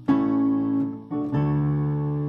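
Yamaha digital piano playing the song's intro: sustained two-handed chords in D major. A new chord is struck just after the start and another about a second in, with a low bass note joining shortly after.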